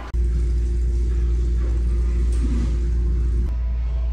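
Steady low rumble with a faint steady hum above it, changing abruptly at a cut about three and a half seconds in.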